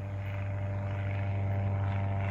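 Single-engine propeller light plane flying overhead, its engine and propeller giving a steady, even-pitched drone that grows slightly louder.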